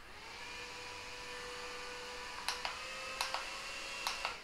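Battery-powered handheld mini fan with Mickey ears running: a steady small-motor whine with an airy hiss that starts as it is switched on and creeps slightly up in pitch. A few light clicks of handling come in the second half.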